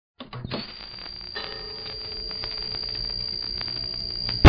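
Logo intro sound effect: a steady high-pitched electronic tone, joined about a second and a half in by a lower tone, slowly swelling, with a few clicks at the start.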